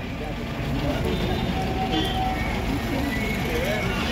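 Street background: a steady low traffic rumble with faint voices of people in the background and a few brief thin tones.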